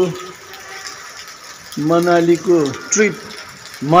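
A person's voice speaking in a short phrase about halfway through, then starting again right at the end, with a quieter stretch of outdoor background before it.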